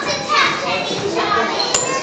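Children talking and calling out, their high voices overlapping, with a single short click about three-quarters of the way through.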